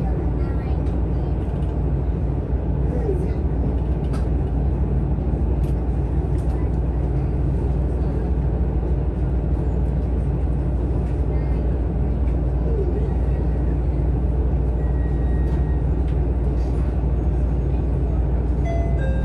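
Steady low rumble of an ET122 diesel railcar running at speed, heard from inside the car, with a few faint clicks.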